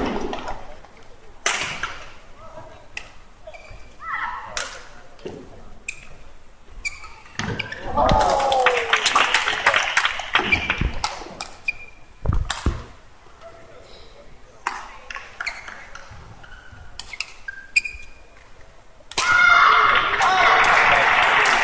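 Badminton rally: repeated sharp cracks of rackets striking the shuttlecock, with short squeaks of court shoes on the mat between shots.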